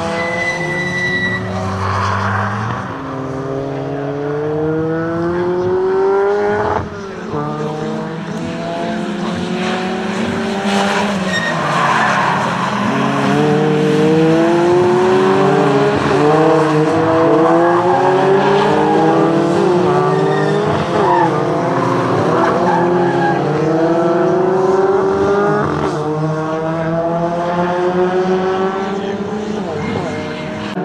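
Race car engines, among them a Peugeot 208 touring car, accelerating hard past the track, each engine rising in pitch through the gears and dropping back at the shifts, several cars overlapping.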